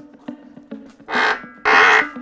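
Two loud, harsh squeals in the second half, each under half a second, as a heavy Ford 302 V8 short block is rolled over on an engine stand by its crank handle: the stand's pivot grinding under the engine's weight.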